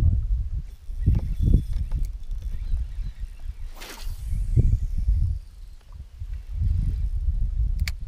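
Wind buffeting the camera microphone in uneven gusts, with a brief swish about four seconds in as a fishing rod is cast and a couple of sharp clicks near the end.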